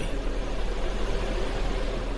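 Steady background noise: an even hiss with a low hum underneath, and no speech.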